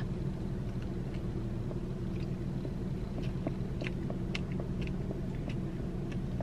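A person chewing a bite of soft iced doughnut with her mouth closed, faint scattered mouth clicks, over the steady low hum of the car she sits in.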